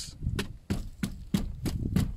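Footsteps shuffling in dry grass: a run of short crisp crackles, about three a second.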